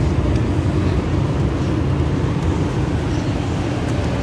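Steady low rumble of outdoor background noise from road traffic, with no distinct events.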